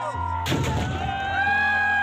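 Firecrackers packed in a Dussehra Ravan effigy going off: one sharp bang about half a second in with a short crackling tail, over music with a long held melody.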